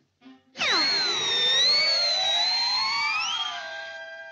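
Cartoon sound-effect and orchestral music cue. A sudden quick downward swoop about half a second in is followed by a long, slow rising whistle-like glide with wavering high tones above it, the classic rising cue for a character springing upward.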